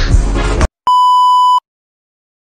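Music stops abruptly about two-thirds of a second in. Shortly after, a single steady high beep, the classic censor bleep tone, sounds for under a second and cuts off.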